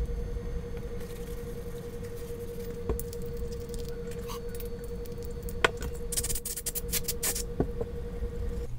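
Small handling noises from a fishing-reel spool being cleaned: a cotton swab scrubbing and the metal spool being turned in the hands, with a few light clicks and a run of quick scratchy strokes near the end, over a steady hum.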